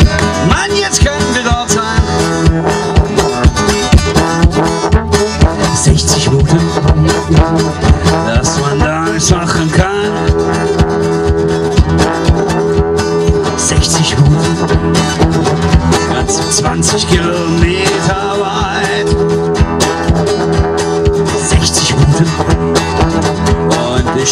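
Live acoustic blues instrumental: a guitar playing over a fast, steady clicking rhythm.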